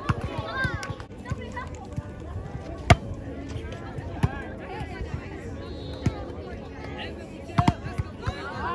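Several sharp slaps of hands and forearms hitting a volleyball during a rally, the loudest about three seconds in, among players' shouts and calls.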